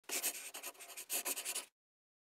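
A short scratchy, rustling sound in two bursts, the second beginning about a second in, then stopping abruptly shortly before the end.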